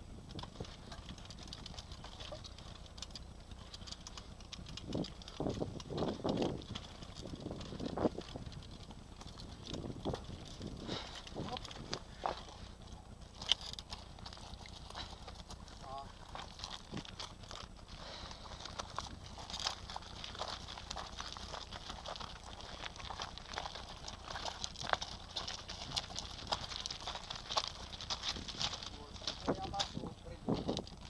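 Bicycle rattling and knocking over a rough dirt track, then crunching steps on gravel ballast as the bike is walked, with a steady high hiss in the second half.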